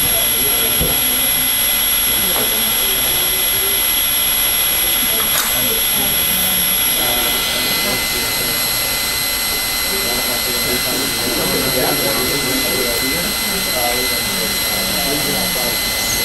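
A steady, loud mechanical hiss with several constant high whines over it, with muffled voices underneath.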